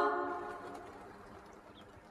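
A sustained a cappella chord sung by a group of voices stops, and its reverberation dies away over about a second, leaving faint room tone.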